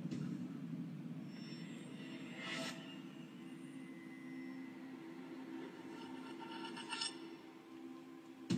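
Soundtrack of a stock animated countdown intro playing from a computer's speakers: a low, steady drone with two brief rushing sweeps, about two and a half seconds in and again near the end.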